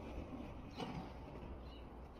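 Quiet residential street ambience: the low rumble of a van driving away, easing off, with a few faint bird chirps and a short tick near the middle.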